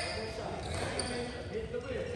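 A basketball bouncing on a hardwood gym floor, with people's voices echoing in the gym.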